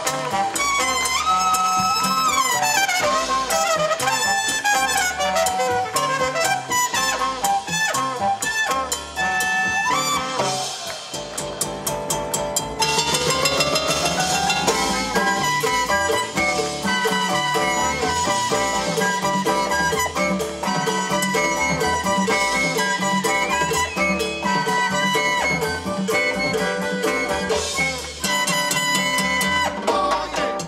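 Live Latin jazz band playing: horn lines and fast runs over drum kit, congas and hand percussion, with bass and keyboard, keeping a continuous beat.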